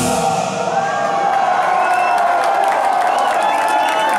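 A heavy metal band's song ends on a final crash, with the drums and bass cutting out within the first half second. A concert crowd then cheers and whoops while a held note rings on beneath.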